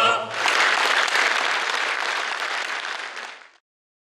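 A male a cappella choir's final chord ends just after the start. Audience applause then breaks out and fades away near the end.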